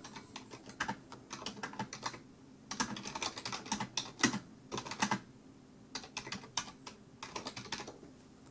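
Typing on a computer keyboard: runs of soft key clicks with short pauses between them.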